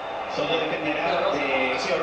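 Speech only: a man talking, the match commentary coming from the television broadcast.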